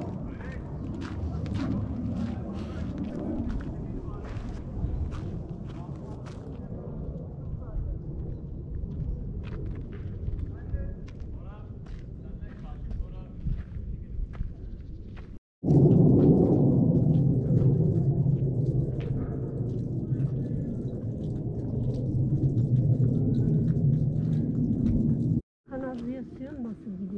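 Wind rumbling on a body-worn camera's microphone, with irregular crunching footsteps on a gravel road over the first half. After a brief dropout about halfway through, the wind rumble is louder and steadier.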